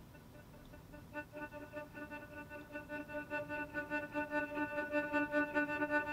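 Native Instruments Straylight granular synthesizer playing a sustained pitched sample cut into big, choppy grains. It comes in about a second in as a pulsing, stuttering tone and grows steadily louder.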